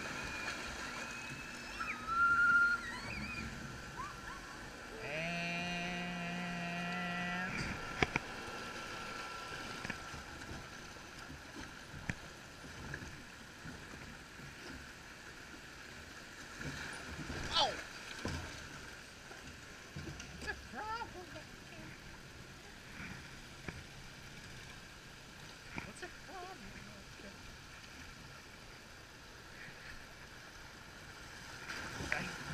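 Water rushing and sloshing along a log flume channel around a drifting log boat, a steady wash of flowing water. Partway through, a pitched, voice-like sound is held for about three seconds, with a few brief sharper splashes or knocks later on.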